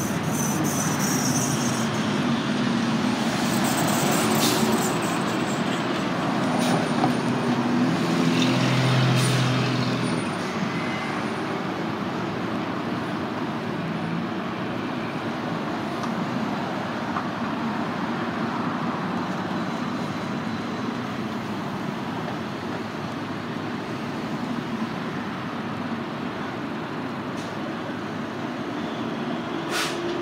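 Road traffic: motor vehicles running past, louder in the first ten seconds with a heavy vehicle's engine and a couple of short hisses, then settling to a steady traffic hum.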